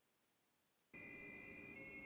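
Near silence: about a second of dead silence, then a faint steady high-pitched tone over low background hiss.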